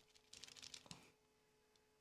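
Near silence, with a few faint clicks in the first second from a small paint pen being shaken by hand to mix its paint.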